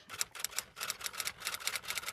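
Typewriter typing sound effect: a quick, uneven run of light key clicks, about eight a second.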